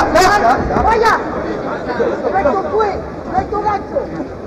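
Arena crowd voices: many spectators talking and shouting at once, with a few sharp smacks in the first second.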